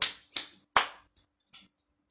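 Finger snaps: four short sharp clicks in under two seconds, the loudest a little under a second in.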